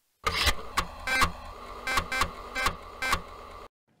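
Electronic logo-sting sound effect: a steady synthetic hum with a run of about seven sharp hits and beeps, starting suddenly just after a silence and cutting off abruptly shortly before the end.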